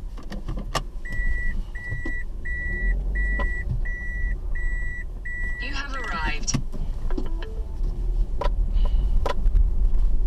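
Vehicle's electronic warning beeper sounding seven even beeps, about 0.7 s apart, then stopping, over the low rumble of a car running slowly.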